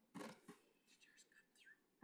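Near silence, broken by brief faint whispering: two short bursts in the first half-second and another right at the end.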